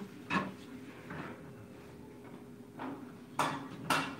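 Dishes and kitchen utensils clinking and knocking on a counter: a few scattered clatters, then several sharper ones near the end.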